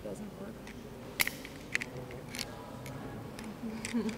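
Faint, low murmured voices in a hall, broken by four or five sharp clicks, the loudest about a second in.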